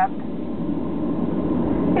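Steady low rumble inside the cabin of a Boeing 737-700 taxiing after landing. The noise of its engines and rolling wheels is even, with no change in pitch. A cabin announcement voice starts again at the very end.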